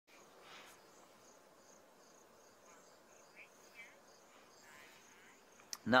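Faint insect chirping: a steady run of evenly spaced high pulses, about three a second, over quiet open-air background.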